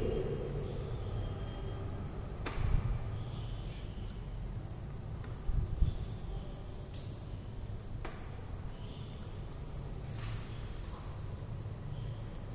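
Steady high-pitched trill of crickets, with faint scratching of a ballpoint pen writing on paper and two soft knocks, about a quarter and half of the way in.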